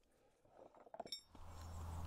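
Near silence, broken about a second in by one short, faint clink with a brief thin ring. A low steady hum fades in near the end.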